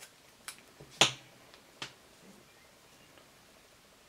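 A few sharp snaps as hands pull and handle a bundle of synthetic Supreme Hair fly-tying fibre: four in all, the loudest about a second in.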